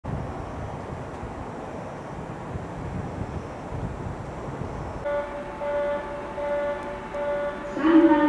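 Station platform background noise for about five seconds, then an electronic chime tone that sounds repeatedly with short breaks. A voice, likely a platform announcement, begins near the end.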